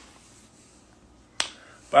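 Quiet room tone broken by a single sharp click about one and a half seconds in.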